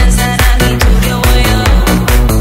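Vinahouse (Vietnamese remix dance music) playing loud, with a steady driving beat, heavy bass notes and bright synth lines.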